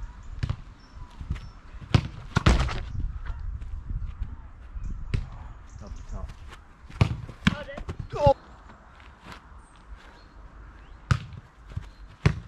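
A football being kicked and bouncing, a string of sharp thuds a second or a few seconds apart.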